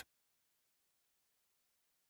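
Silence: the soundtrack is blank, with no sound at all.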